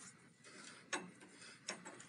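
Two faint, sharp metallic clicks, a little under a second apart, as the threaded adjuster on a pickup's steering drag link is turned by hand to lengthen the link and centre the steering wheel.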